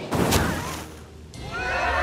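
A sharp crash just after the start that dies away, then from about a second and a half a chorus of many wavering, high cries from a crowd of cartoon animals.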